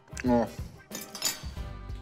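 A short voiced sound from the man tasting, then about a second in a fork clinks against the plate, over steady background music.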